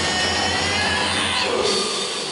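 Live rock band's distorted guitars and bass sounding a loud, dense, noisy wall of sound, the low bass held until it cuts out about one and a half seconds in.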